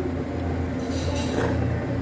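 A man slurping noodles off chopsticks, a short noisy suck about a second in, over a steady low hum.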